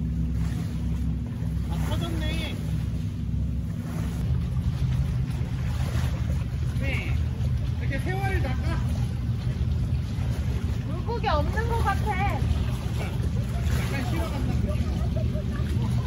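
Steady low drone of a boat engine out on the water, evenest in the first few seconds, with short bits of people's voices talking now and then.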